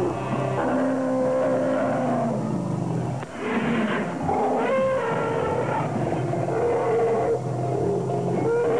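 African elephants calling: a series of long held calls at different pitches, one after another.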